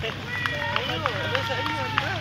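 Several men's voices shouting and calling out as a football team jogs onto a grass pitch, with a few held high tones over them.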